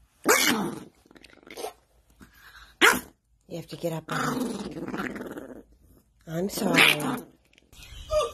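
Small long-haired terrier growling, a string of separate growls and grumbles with the longest, about two seconds, in the middle.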